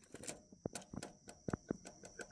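Faint, irregular light clicks and taps of a black nylon 3D print being handled on crumpled aluminium foil.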